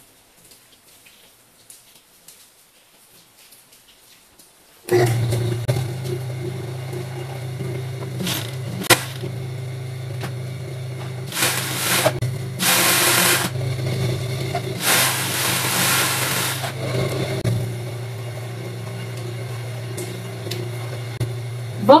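Industrial overlock machine switched on about five seconds in, its motor then running with a steady hum. Three louder stretches of stitching come as the fabric is run through to serge a seam.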